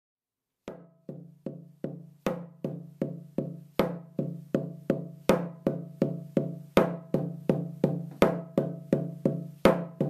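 A drum beaten in a steady pulse of about two and a half strikes a second, every fourth beat accented. Each strike leaves a low ringing tone.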